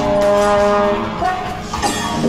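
A held horn-like chord of several steady tones in an industrial-jazz track. It sounds for about a second, then drops away, and a short sharp hit follows near the end.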